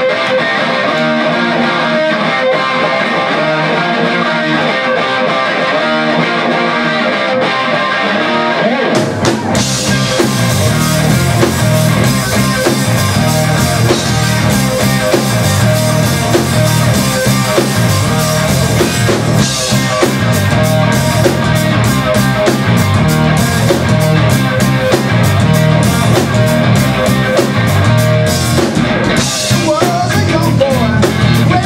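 Live rock band: an electric guitar plays a repeating riff alone, then drums and bass guitar come in about nine seconds in and the full band plays on, the cymbals busier from about halfway through.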